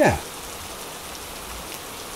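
Steady rain falling: an even hiss, laid in as a sound effect.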